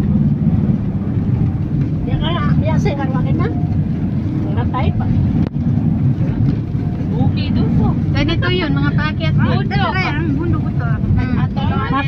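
Steady low road and engine noise of a moving vehicle heard from inside it, with people talking over it for a few seconds, especially in the second half.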